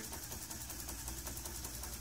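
LEGO EV3 robot rattlesnake's motor shaking its plastic-brick tail rattle: a faint, steady mechanical rattle with rapid, even clicks. The rattle is running fast because a hand is near the robot's ultrasonic sensor, which sets the shaking speed.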